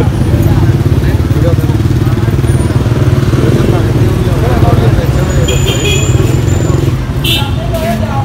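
A motorbike engine idling close by, a steady low rapid chugging that eases a little near the end.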